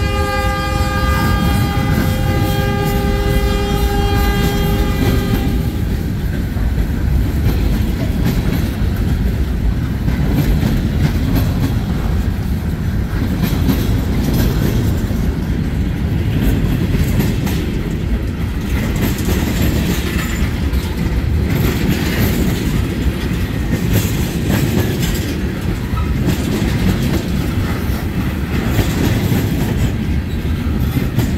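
Freight cars rolling past close by, with a steady rumble and the clatter of wheels over the rail joints. For the first five seconds or so, a multi-note locomotive horn sounds from the head end of the train over the rumble.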